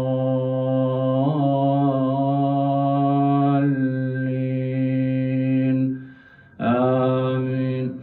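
A man reciting the Quran aloud as imam, in the slow melodic style of congregational prayer, holding long drawn-out notes at a steady low pitch. The voice breaks off briefly about six seconds in, then resumes with another long held note.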